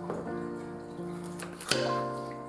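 Background music of sustained plucked-string notes. Near the end come a few sharp knife chops on a wooden cutting board.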